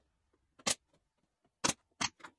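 Pneumatic pin nailer firing two pins into glued wooden parts: two sharp clicks about a second apart.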